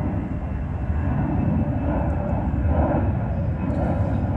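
A steady low rumble of outdoor background noise, with no clear individual event.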